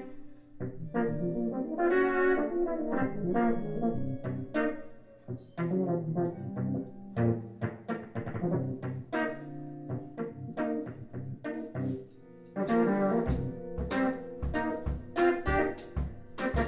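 Live jazz quartet playing: an Akai EWI 4000s wind synthesizer carries the melody over archtop electric guitar, upright bass and drums. About three quarters of the way through, the drums come in harder with heavy bass-drum hits and cymbals.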